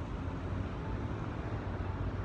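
Steady background noise of a city street, a low hum of distant traffic with no distinct events.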